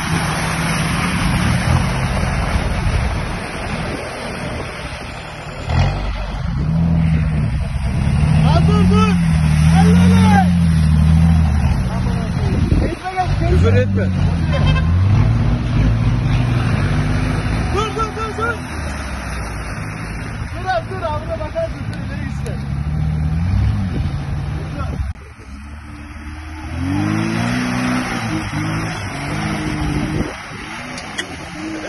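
Off-road 4x4 engines revving hard as they drive through deep mud, the engine note rising and falling in repeated surges. After a short dip in level, another engine, a Lada Niva's, revs up again near the end.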